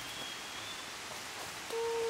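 Steady outdoor forest background hiss. Near the end a person's voice starts a held call.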